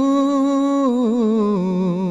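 A man singing an Urdu nazm (devotional poem) unaccompanied, holding one long vowel that wavers slightly and then steps down in pitch near the end.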